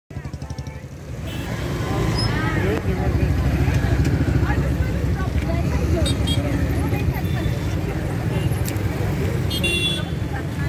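Voices of a crowd over a heavy, steady rumble of motorcycle and car engines, growing louder over the first two seconds, with short vehicle horn toots about six seconds in and again near the end.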